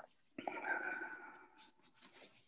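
A faint, brief voice, well below the level of the meeting talk, lasting about a second near the middle, heard over a video-call link.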